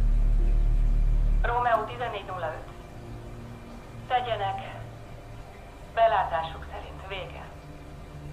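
Thin, narrow-band voices from a police radio in three short transmissions. They follow a loud, low, steady hum that stops about a second and a half in.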